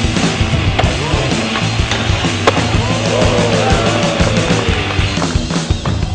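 Rock music with skateboarding sounds mixed over it, including one sharp clack of the board about two and a half seconds in.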